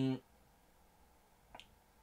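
The end of a held 'euh' just after the start, then a quiet pause broken by a single short, sharp click about a second and a half in.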